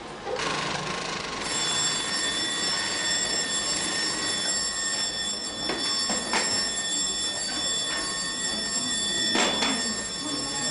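Factory electric bell ringing continuously from about a second and a half in, over workshop noise, signalling a break for the workers. A few sharp knocks sound near the middle and near the end.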